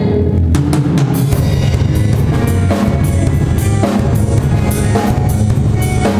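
Live band playing an instrumental passage of Bolivian Christian folk, the drum kit to the fore with steady bass drum and snare strokes over sustained guitar notes.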